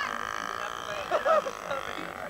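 Small model airplane engine running steadily as the radio-controlled biplane flies past, a constant high drone. A brief voice cuts in about a second in.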